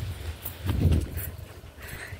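Footsteps of a person running on a concrete rooftop: a sharp footfall at the start, then a dull low thump about a second in.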